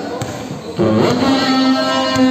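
A basketball dribbled on the court floor, with a long, steady-pitched held note starting about a second in and carrying over the gym noise.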